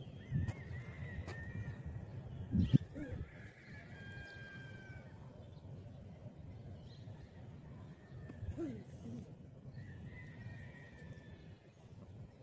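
Outdoor background with several short, high, whistle-like calls, each held at a steady pitch, over a low rumble. A few low knocks come through, the loudest about three seconds in.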